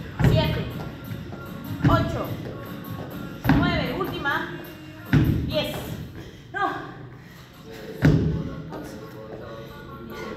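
Repeated thuds of an athlete landing box jumps on a wooden plyo box and rubber gym floor, about one every second and a half, six in all, stopping near the end.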